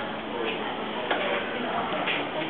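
Indistinct speech from people at a distance from the microphone, with a few light ticks.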